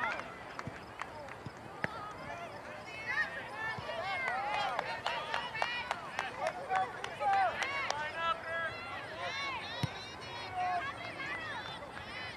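Several distant voices of soccer players and sideline spectators shouting and calling out over one another, building about three seconds in and easing near the end, with scattered short sharp clicks.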